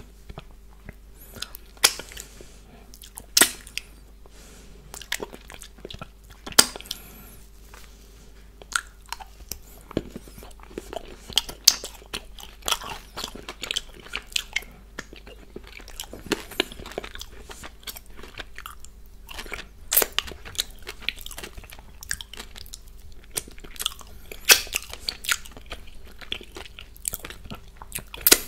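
Close-miked chewing with irregular sharp crunches of candy-coated Smarties and cupcake topping, with wet mouth clicks. Finger licking near the end.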